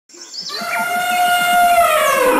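Jungle sound effects for an animated intro: bird chirps over held, slowly swelling tones, fading in from silence.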